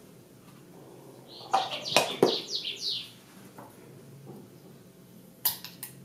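A metal spoon clicking against a steel saucepan and a tub as chocolate paste is scooped and added, with sharp clicks about two seconds in and again near the end. A few short falling chirps come about two to three seconds in.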